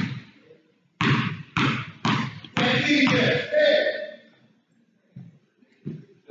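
Basketball bounced on a hardwood gym floor by the shooter at the free-throw line before the shot. There is one bounce at the start, then four bounces about half a second apart, each ringing in the hall.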